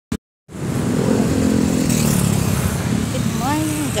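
Road traffic noise with the low engine rumble of a motor vehicle passing close by. It starts about half a second in after a brief click, and a voice begins near the end.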